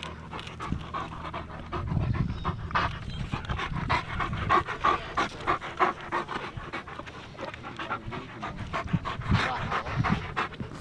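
German Shepherds panting rapidly, close to the microphone: a steady run of quick breaths.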